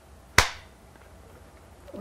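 A film clapperboard snapped shut once, a single sharp clap about half a second in, marking the start of an interview take.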